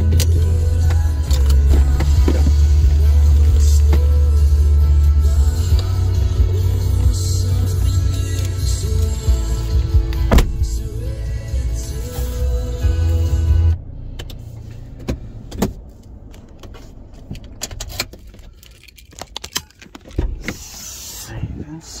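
A song with a singing voice and very heavy bass plays through a car sound system and cuts off suddenly a little over halfway through. After that there are only scattered clicks and handling sounds.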